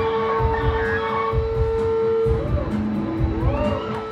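Live band playing with electric guitar over a steady low beat. A note is held for about two seconds, then bending notes come in near the end.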